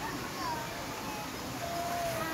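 Faint, distant voices of people at a busy outdoor swimming pool, a few calls rising over a steady background hubbub.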